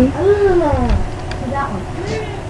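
A girl's drawn-out hummed 'hmm' with closed lips, lasting about a second, rising and then falling in pitch, followed by a brief second short sound.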